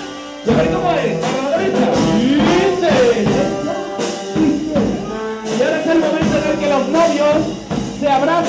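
Charanga brass band playing, with a tuba and a euphonium among the brass. The music comes in about half a second in, after a brief quieter moment.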